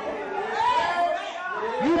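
Speech only: softer voices calling out in a large room between the preacher's lines, with the preacher's voice starting again near the end.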